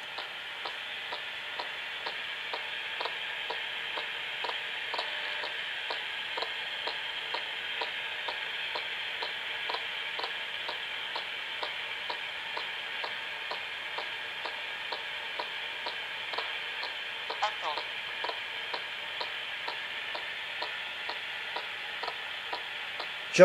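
Ghost-hunting spirit box scanning: steady radio static with a regular ticking about three times a second as it sweeps. A brief voice-like warble breaks through about three-quarters of the way in.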